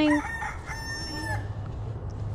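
A rooster crowing: a short rising first part, then a long held note of under a second.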